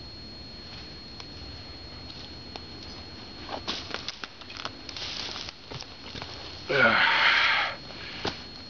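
Rustling and crunching in dry leaf litter, with a few sharp clicks, as a person moves and handles gear. Near the end comes a short, loud burst of voice.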